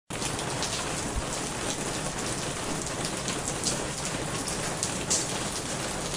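Steady rain, an even hiss with scattered sharper drop hits.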